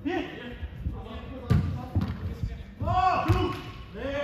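A football being kicked on an indoor pitch, with two sharp thuds about a second and a half and three and a half seconds in. Players' shouted calls come at the start and again around three seconds.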